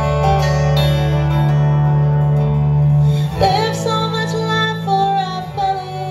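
Live country song: a woman singing over an acoustic lap steel guitar. The first half is held, ringing chords, and the voice moves through a sliding melodic line from about halfway in.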